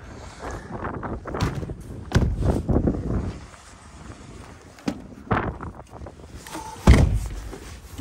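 Knocks, rustling and clattering of gear being handled and loaded, with one heavy thump, like a door shutting, about seven seconds in.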